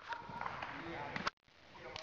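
Indistinct voices, with the sound cutting out briefly just past the middle.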